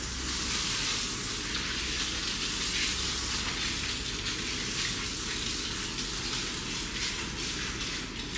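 Water spraying steadily from a handheld shower sprayer into a salon shampoo basin, rinsing shampoo lather out of hair.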